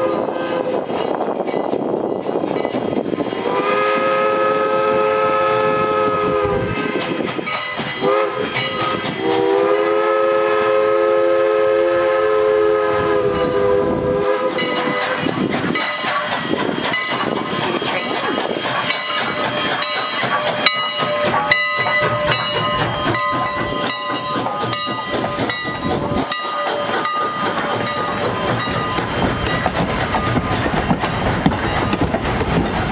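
Steam locomotive whistle, Strasburg Rail Road No. 89, blowing a crossing signal: a long blast, a short one, then a long one of about five seconds. From about halfway on, the engine and its coaches roll past with a steady clickety-clack of wheels over rail joints.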